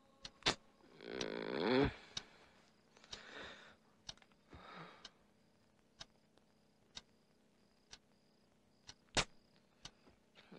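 A sleeping man snoring: one long snore that falls in pitch, then two softer, breathier snores. A clock ticks about once a second throughout, with two sharper clicks, one near the start and one near the end.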